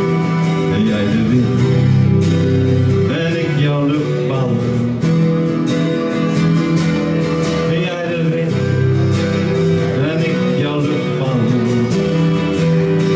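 An acoustic guitar and an electric guitar playing live together: strummed chords under a melodic lead line.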